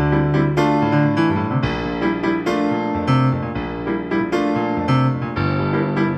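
Viscount Physis Piano digital piano, physical-modelling synthesis, playing its 'Ac. Piano Rock' acoustic piano preset: a two-handed passage of struck chords over held bass notes that change every second or two.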